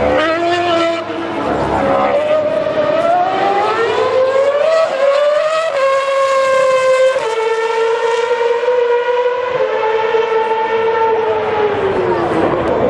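Red Bull Racing Formula 1 car's 2.4-litre Renault V8 screaming at high revs, its pitch climbing as it accelerates up through the gears, with quick upshifts heard as small steps in pitch. The note then holds high and nearly steady before falling away near the end as the driver lifts off.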